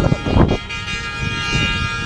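A convoy of pickup trucks on the move, with a steady horn-like tone held throughout and wind buffeting the microphone. A brief loud bump comes about half a second in.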